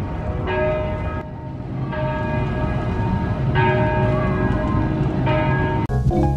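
Church bell tolling: four strikes about a second and a half apart, each ringing on with many overtones until the next, over a steady low rumble.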